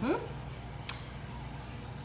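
A woman's short, rising 'mm-hmm' hum while tasting, then a single sharp click about a second in, over a steady low hum of room noise.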